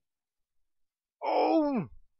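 A drawn-out 'ohh' exclamation of surprise, starting a little over a second in and sliding down in pitch.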